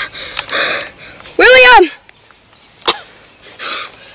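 A child's voice making breathy gasps and one loud, pitched wailing cry that rises and falls about a second and a half in, with a sharp click near the three-second mark.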